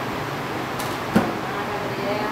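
Steady whooshing noise of a room air conditioner running, with a single sharp click a little over a second in.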